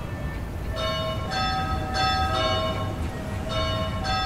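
Clock-tower bells chiming: a few struck notes of differing pitch, each left ringing, over a low steady street rumble.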